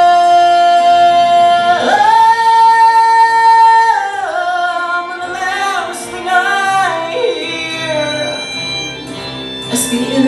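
A young man singing solo over instrumental accompaniment: he holds a long high note, leaps higher about two seconds in and holds that note, then comes down in a wavering descending line.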